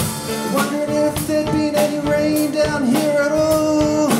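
Live acoustic band playing an instrumental passage: strummed acoustic guitar, mandolin, cello and drum kit, with long held notes over a steady beat.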